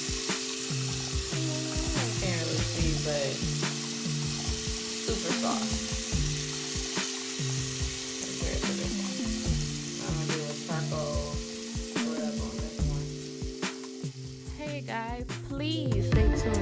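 Tap water running steadily from a faucet into a bathroom sink, with hands being rubbed and rinsed under the stream.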